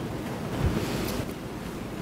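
Steady hiss of an open courtroom sound system, with a brief louder rush of noise about half a second in.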